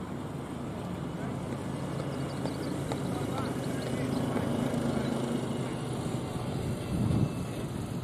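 Small utility vehicle's engine running as it drives past, a low rumble that grows louder toward the middle and then fades, with a brief low thump near the end.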